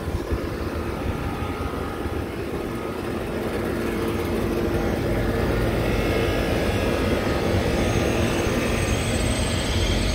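Rooftop HVAC unit running: a steady fan and motor hum over a low rumble, growing louder about four seconds in.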